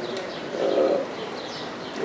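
A pause in speech with a faint, short, low hum lasting about half a second, starting about half a second in, over a quiet background.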